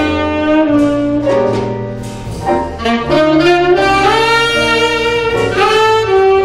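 Tenor saxophone playing a jazz melody line of held and moving notes, with upright bass playing low notes underneath. The line eases off briefly about two seconds in, then comes back fuller.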